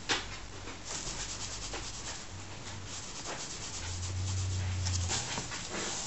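Nylon tent fabric rustling and scratching as a hand wrestles with a ferret inside it, with runs of rapid scratchy ticks. A low hum swells briefly a little after the middle.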